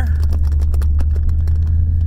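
Car cabin noise while driving: a steady low rumble, with a scatter of faint ticks and light knocks.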